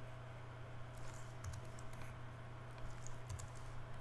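Faint, scattered clicks of a computer keyboard and mouse as keys are pressed, over a steady low electrical hum.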